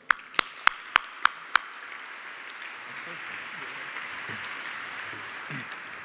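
Audience applauding in an echoey hall, opening with six sharp claps close to the podium microphone in the first second and a half. The applause holds steady and then fades out near the end.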